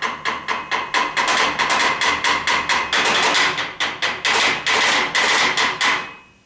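Knife chopping rapidly on a cutting board: a fast, even run of sharp knocks, several a second, with a steady ringing tone underneath.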